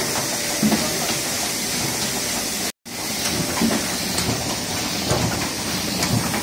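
Single-colour Miehle Roland sheetfed offset press running and printing, a steady mechanical hiss with faint clicks. The sound drops out for an instant just before halfway.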